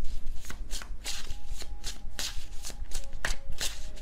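A tarot deck being shuffled by hand: a run of quick, crisp card strokes, about three or four a second.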